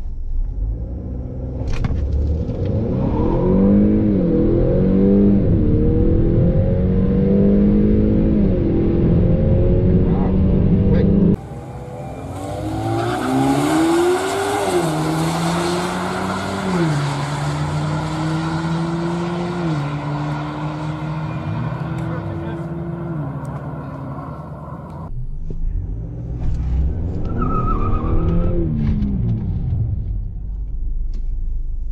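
Drag-race launch of a Honda Accord 2.0T, its turbocharged four-cylinder heard from inside the car, the note climbing and dropping again and again as the 10-speed automatic makes quick upshifts. About eleven seconds in the sound cuts suddenly to trackside, where the cars' engines rise and fall in pitch at each, more widely spaced, gear change.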